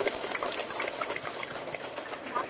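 Audience applauding steadily, many hands clapping together.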